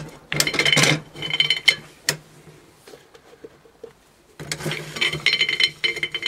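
Cast iron hand-crank black walnut huller being turned, its toothed mechanism scraping and clicking as it strips the green husks off the walnuts. The cranking pauses for about two seconds in the middle, then starts again.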